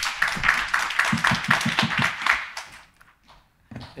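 Audience applauding in a hall, a dense patter of many hands clapping that fades out about three seconds in.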